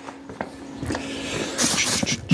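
Hands rummaging in a plastic tub of parts, with a few small knocks over a faint steady hum, then a loud rustle of plastic bags and bubble wrap near the end.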